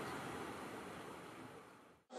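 Fountain jets splashing into a pool: a faint, steady rush of water that fades out toward the end.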